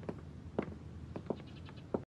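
Footsteps of hard-soled shoes on a wooden floor: several uneven knocks over a low, steady room hum.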